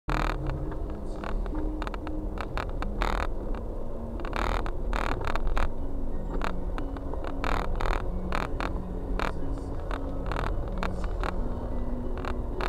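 Car engine and tyre rumble heard inside the cabin while creeping in slow traffic on a slushy road, with many short noisy swishes throughout and faint steady tones that step in pitch.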